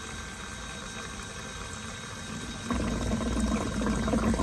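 Vevor 1/10 HP electric water transfer pump sucking the last shallow water through a suction disc on the bottom of a plastic tote: steady watery sucking. About two-thirds of the way in it turns suddenly louder and rougher, with a low hum, as the water runs low.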